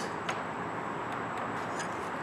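A steady background hiss with two faint clicks, one shortly after the start and one near the end, as a metal sinker mold is handled with pliers.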